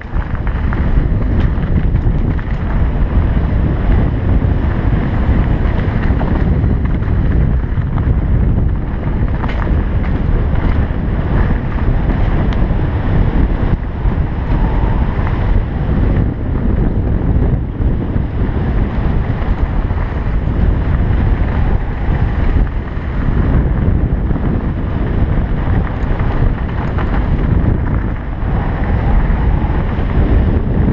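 Steady low wind noise on a helmet-mounted camera's microphone during a fast mountain-bike descent, mixed with the rumble and light rattle of the bike on a dirt trail.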